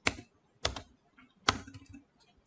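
Computer keyboard keystrokes: three sharp key presses spaced over the two seconds, with a few fainter taps between them.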